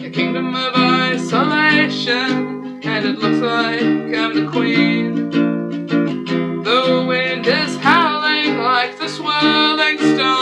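Solo voice singing over a strummed ukulele; the ukulele chords run steadily underneath while the voice carries the melody, with a wavering held note about eight seconds in.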